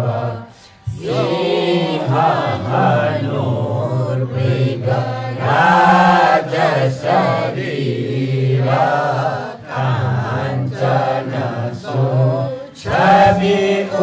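A mixed group of men and women chanting a text together in unison through hand-held microphones. The chant breaks for a short breath pause about a second in and again just before the end.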